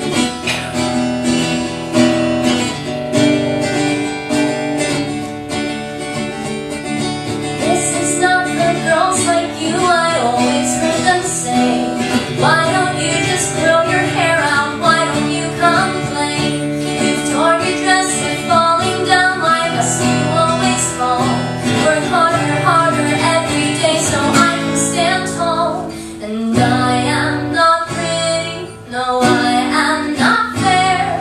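Acoustic guitar strummed in a steady rhythm, with a woman singing a melody over it from about eight seconds in: a live song with guitar and voice.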